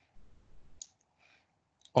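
Computer keyboard keystrokes, picked up through the presenter's microphone: a soft low rustle, then one sharp key click a little under a second in and a couple of faint ticks, as a web address is typed and entered.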